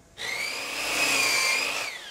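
A high-pitched mechanical whine with a noisy rush, like a small motor or power tool running. It comes in just after the start, holds steady with a slight rise and fall in pitch, and fades out near the end.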